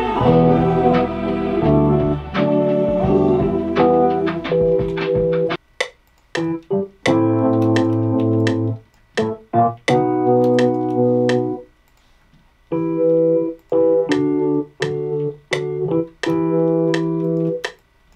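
Beat playback in a music program: full mix with deep bass under keyboard chords for about five seconds, then cutting to keyboard chords alone, played back in short chunks that stop and restart every second or two.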